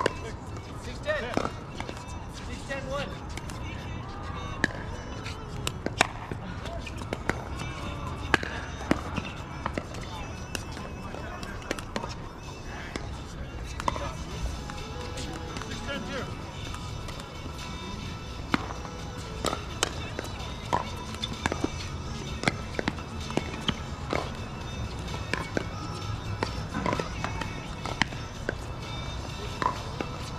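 Pickleball paddles hitting a plastic pickleball during a rally: sharp pops at irregular intervals, with more pops from games on nearby courts, over background music and distant voices.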